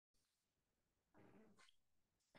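Near silence: room tone at the start of the recording.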